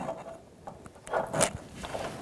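Faint rustling and scraping of a new bump stop being pushed into place against a rusty steel frame by a gloved hand, with a brief louder scrape about halfway through as its pin is lined up.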